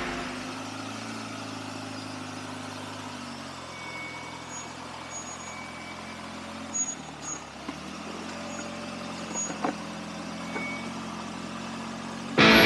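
Rock-crawler buggy's engine running steadily at low revs as it crawls over boulders. The engine note sags about seven seconds in, then steadies, with a few sharp knocks in the second half.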